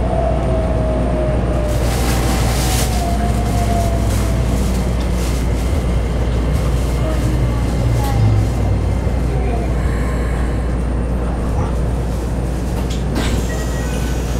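Cabin running sound of a Keikyu New 1000 series train with a Toyo IGBT-VVVF inverter. The inverter and traction-motor whine falls in pitch as the train slows toward the next station, over a steady low rumble, with a few sharp wheel-and-rail clacks.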